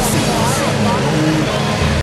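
Racing riding lawn mower engines running steadily, with voices over them.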